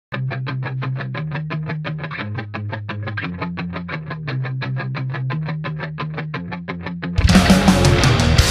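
Rock song intro: a lone guitar picking a quick, even run of notes, about six or seven a second, over shifting low notes. About seven seconds in, the full band comes in louder with drums and distorted guitars.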